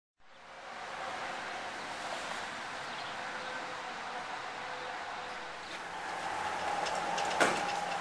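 Steady outdoor background noise with a faint hum, growing a little louder in the second half, and one sharp click near the end.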